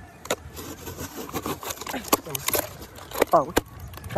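A knife cutting through a cardboard box and its packing tape, with the flaps pulled open by hand: a run of irregular sharp scrapes and clicks. A few faint voices are heard over it.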